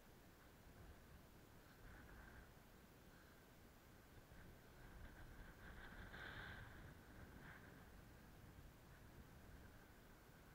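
Near silence, with a faint low rumble and a faint high tone that swells briefly about six seconds in.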